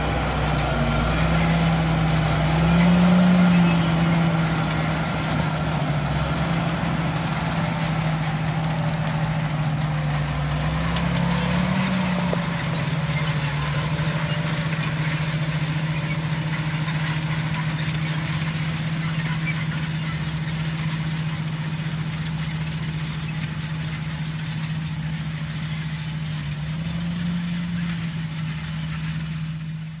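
John Deere tractor's diesel engine running steadily while pulling a Kinze planter, its pitch rising briefly three times as it revs up. Loudest about three seconds in, growing fainter near the end as the tractor moves away.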